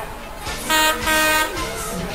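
A locomotive sounds two short toots in quick succession, the second a little longer.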